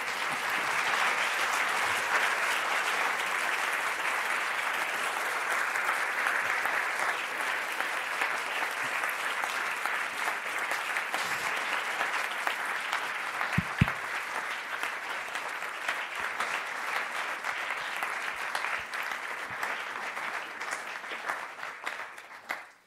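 Lecture-hall audience applauding steadily and at length, easing off slightly before stopping at the very end, with a single brief low thump about two-thirds of the way through.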